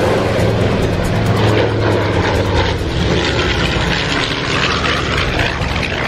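A B-25 Mitchell bomber's twin Wright R-2600 radial engines droning steadily as the plane flies past, propellers turning.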